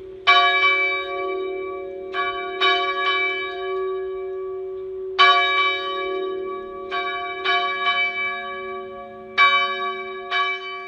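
A single church bell struck repeatedly at an uneven pace, often two or three strokes close together. Each stroke rings on with a long, slowly fading hum underneath.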